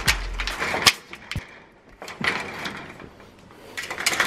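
Security screen door rattling and clicking as its handle is worked and the door is pulled: the door is stuck and won't open. It comes in two noisy spells of rattling with a sharp click near the end of the first.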